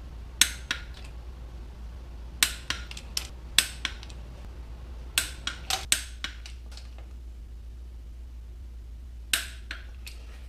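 Torque wrench on the exhaust manifold nuts, being brought to 50 foot-pounds: sharp metallic clicks come in scattered groups, a dozen or so in all, over a low steady hum.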